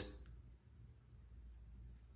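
Near silence: quiet room tone with a faint low hum.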